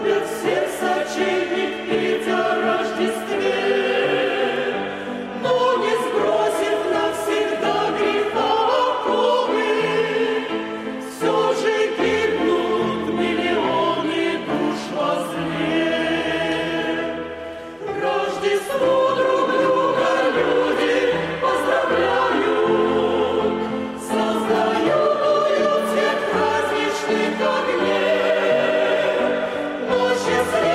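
Mixed church choir of women's and men's voices singing a hymn, in phrases of about six seconds with brief breaks between them.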